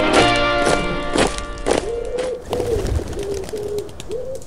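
Music of struck, ringing notes that stops about halfway through, followed by a run of short rising-and-falling pigeon coos, about two a second.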